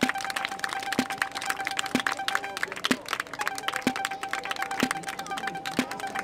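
A small crowd clapping, over music with a steady beat about once a second and a long held tone that breaks off briefly in the middle.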